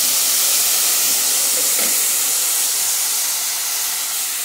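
Rice sizzling and steaming in a hot pot on the stove: a loud, steady hiss that eases slightly near the end.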